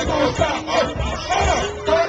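Hip-hop track playing loud over a live PA with a pounding bass beat, and voices shouting over it from the stage and the crowd.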